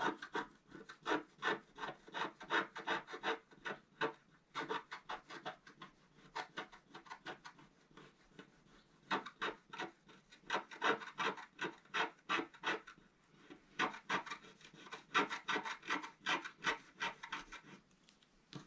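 Wooden stylus scratching the black coating off a scratch-art card in quick, short strokes, in several bursts broken by brief pauses.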